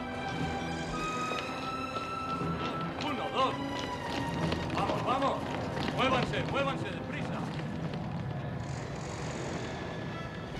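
Film soundtrack of an action scene: music with men's shouts about midway and running footsteps.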